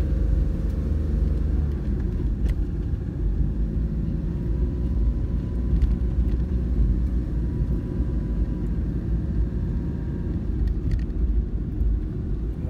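A car driving along a paved road, heard from inside the cabin: a steady engine and tyre rumble, with a few faint clicks.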